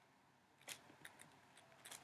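Near silence with a few faint clicks of a stylus tapping and sliding on a tablet screen while handwriting, the clearest about two thirds of a second in.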